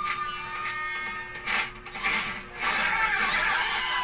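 Film soundtrack played through a TV speaker: shamisen music with sharp plucked strikes. A crowd's voices rise about two-thirds of the way in.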